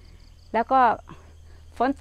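Insects chirping steadily at a high pitch in the background, between short spoken words.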